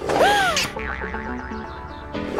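Cartoon boing-style sound effect, a short tone that swoops up and falls back with a burst of noise, as a helmet drops onto a character's head; background music runs under it.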